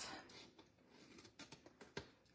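Faint snips of small scissors cutting the corners off a piece of cardstock, a few short clicks against near silence, the clearest near the end.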